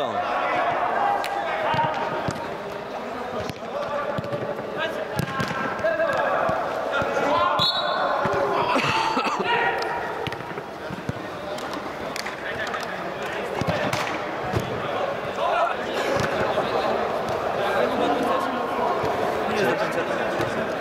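Indoor football match: players' voices shouting and calling, with repeated thuds of the ball being kicked on artificial turf inside an inflatable sports dome.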